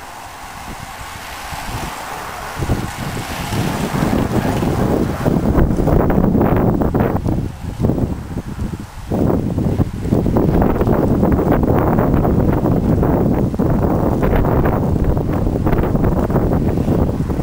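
Wind buffeting the camera microphone: loud, gusting low rumble that sets in about two and a half seconds in and comes and goes, with short lulls in the middle.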